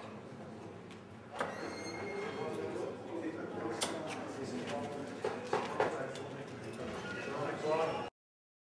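Steel-tip darts striking a bristle dartboard: sharp thuds at the start and about a second and a half in. Murmuring voices follow, with another sharp knock a little before four seconds.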